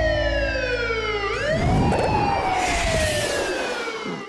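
Siren-like sound effect: a pitched tone with many overtones glides slowly downward, swoops briefly upward about a second in, then falls slowly again over a low rumble.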